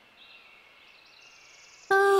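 Faint soundtrack music, a soft high shimmer, under a pause in the dialogue.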